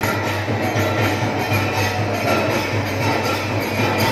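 Dense, loud din of a crowded temple kirtan: many voices, hand cymbals and drum merging into a steady wash over a constant low hum.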